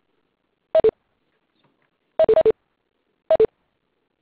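Audio-conference system beeps: short electronic two-note tones, each a higher note falling to a lower one. One pair comes just under a second in, two pairs run back to back a little past two seconds, and one more pair follows near the end.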